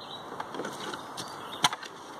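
Broken pieces of an entertainment center clattering as they are handled: a few light clacks, then one sharp knock about one and a half seconds in.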